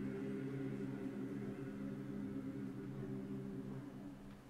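A church choir holding a long final chord of several notes, steady in pitch and slowly fading away near the end.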